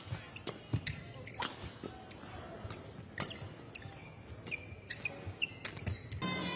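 Badminton rally: sharp racket strikes on the shuttlecock every second or two, with squeaks and footfalls of players' shoes on the court in between.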